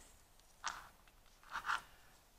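Faint short scrapes of wooden beads and thread being handled as beads are slid onto a needle: one brief scrape early on, then two softer ones near the end.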